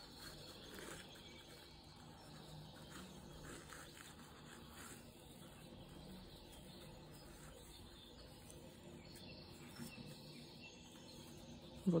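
Faint, soft rustling and scratching of jute twine being worked with a metal crochet hook as a double crochet stitch is made, over a low, steady room hum.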